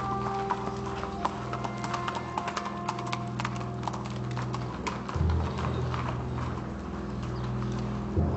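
Hooves clip-clopping on hard ground over sustained low background music, the clopping thinning out about five seconds in.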